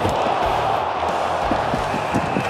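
Music mixed with the steady din of a hockey arena crowd reacting to a hard body check, with a few short low knocks.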